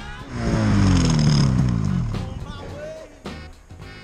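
Snowmobile engine revving hard and then winding down, its pitch falling steadily over about two seconds before it fades, with music playing underneath.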